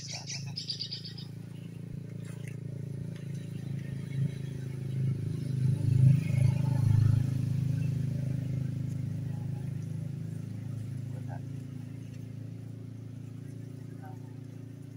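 Low, steady hum of a honeybee swarm clustered on a tree branch. It swells to its loudest about six seconds in, then fades back. A few bird chirps come in the first second.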